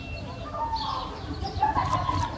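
Outdoor birds chirping in repeated short falling notes, with a thin, steady whistled note. In the second half a louder, lower wavering call or voice comes in, along with a few sharp clicks.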